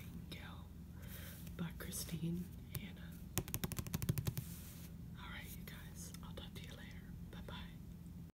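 Soft whispering, with a quick run of about a dozen fingernail taps on a book cover in the middle.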